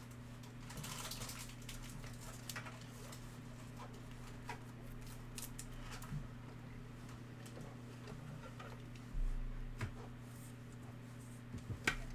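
Quiet handling of a trading card and a rigid plastic card holder as the card is slid in: scattered soft clicks and rustles, with a slightly louder knock about nine to ten seconds in, over a steady low hum.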